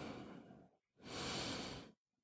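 A man breathing audibly: one breath tails off about half a second in, then a second, slower breath of about a second comes near the end.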